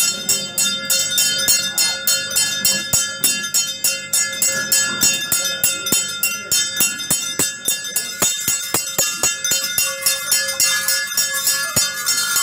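Bhuta kola ritual music: metal bells jingling in a fast, even beat of about five strokes a second, with deeper drum-like strikes and a steady held tone underneath.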